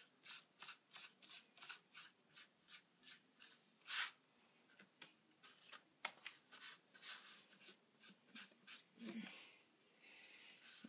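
Faint, repeated rubbing and rustling of hands pressing and smoothing a cardboard sheet on newspaper, about three strokes a second. There is one louder rustle about four seconds in.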